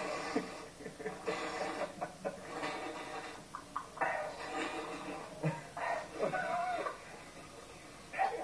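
Men laughing and hooting in short irregular bursts, heard through a television's speaker.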